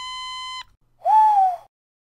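Two pitched cartoon-style sound effects: a steady held tone that stops about half a second in, then a short, louder note that falls in pitch, about a second in.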